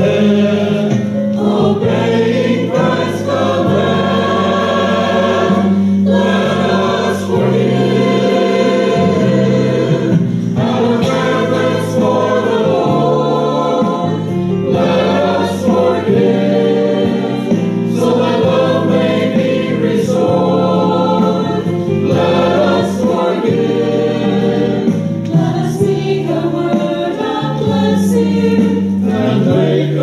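Mixed adult church choir of men's and women's voices singing a hymn-style anthem in parts, with sustained chords and continuous singing.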